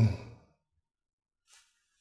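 The tail of a drawn-out, hesitant 'um' from an elderly man, held on one pitch and fading out within the first half second, then near silence with a faint short noise near the end.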